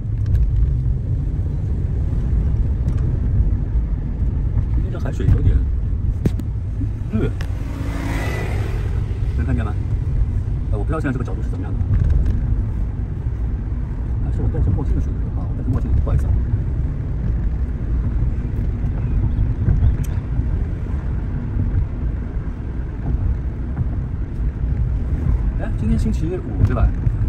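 Steady low rumble of a Nissan sedan's engine and tyres heard from inside the cabin while driving, with a few faint voice fragments and clicks over it.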